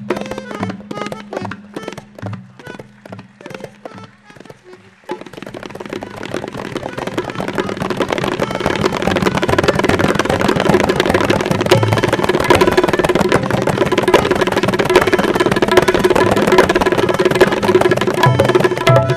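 Tabla and dholak playing in teentaal. Spaced single strokes for about five seconds, then an abrupt switch to a dense, rapid flurry of strokes that grows louder and keeps going.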